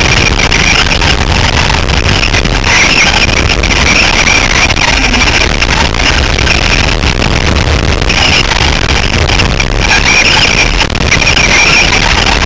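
Loud, distorted onboard sound of an electric RC short-course truck racing: a continuous whine from the motor and drivetrain, with rattles and knocks from the chassis over the dirt track.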